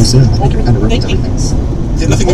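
People talking, with a steady low rumble of a car driving at highway speed underneath.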